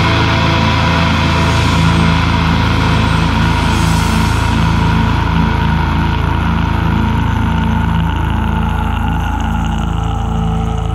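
Heavy metal band's final distorted chord on electric guitar and bass ringing out after the drums stop, a steady drone with a high held tone that sags slightly in pitch near the end.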